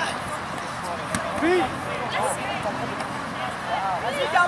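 Several people calling out across an outdoor sports field: short shouts from different voices overlapping over a low background babble, with a single sharp knock about a second in.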